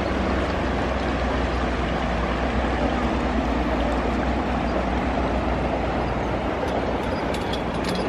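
A shallow, clear river running over a rocky bed: a steady, even rush of flowing water.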